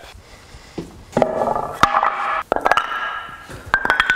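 Wooden boards being handled, knocking against each other, against neighbouring bars and against the concrete floor: several sharp knocks, some with a short ringing tone after them.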